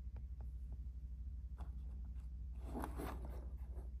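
Faint handling noises: a few light clicks, then a couple of soft scrapes and rustles in the second half as a card model railway building is picked up and turned on a wooden table, over a steady low hum.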